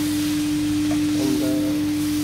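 Sausages and minced steak sizzling as they brown in a pot, under a steady hum tone.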